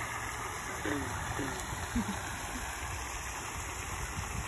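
Steady splashing of a garden pond fountain over a low rumble, with a few faint, short voice-like sounds between about one and two seconds in.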